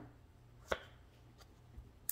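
A sharp tap about two-thirds of a second in, then a fainter tick or two, as a tarot deck is handled over the table.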